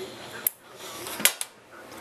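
Sharp clicks of a light switch being flipped: one about half a second in, then a louder double click just past a second in, over a low steady room hum.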